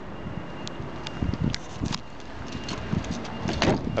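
Footsteps on a tarmac car park and the knocks and rustle of a handheld camera being moved, over a steady background noise.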